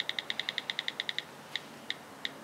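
Touchscreen keyboard key-click sounds from the delete key being held: a rapid run of about a dozen clicks a second that stops a little past halfway, then two single clicks.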